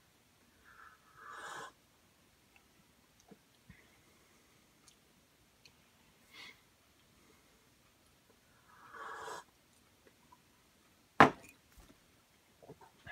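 Sips of hot coffee slurped from a mug, two clear ones about a second in and near the nine-second mark with a smaller one between. Near the end comes a sharp knock, the loudest sound, as the mug is set down on the bench.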